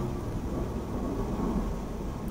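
Steady low rumble of background noise, with no distinct event standing out.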